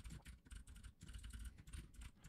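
Faint computer keyboard typing: scattered short key clicks.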